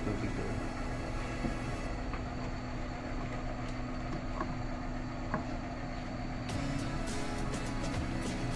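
A vehicle engine idling steadily in the open engine bay, with light clicks and taps near the end.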